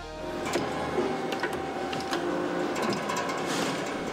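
Piano-stringing workshop sounds: a small machine running steadily with scattered light clicks and taps, under faint music.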